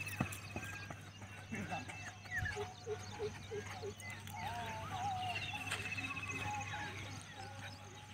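Open-air ambience dominated by birds calling: a rapid, high, even trill at the start and again about five seconds in, with short chirps and a run of quick repeated notes between them. Faint voices and a low steady hum lie underneath.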